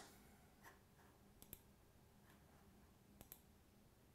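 Near silence broken by a few faint computer mouse clicks, including two quick pairs, one about a second and a half in and one near the end.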